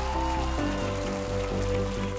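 Background music of held chords that shift to a new chord about half a second in, with audience applause underneath.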